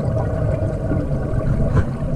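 Underwater scuba breathing through a regulator: exhaled air bubbling out close to the camera, a steady low noise.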